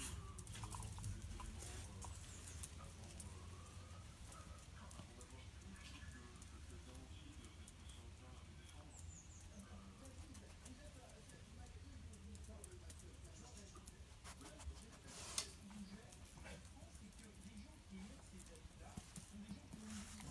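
Dogs play-wrestling on patio tiles, faint scuffling with many small clicks of paws and claws, and one sharper click about fifteen seconds in. A low steady rumble sits on the microphone underneath.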